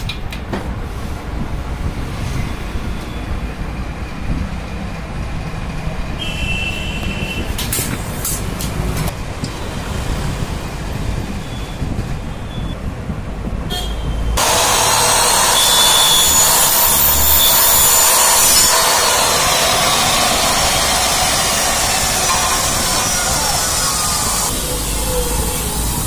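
An electric chop saw's blade cutting through an aluminium window profile: a loud cut that starts about halfway through and lasts about ten seconds. Before it there is a steady low rumble with a few knocks.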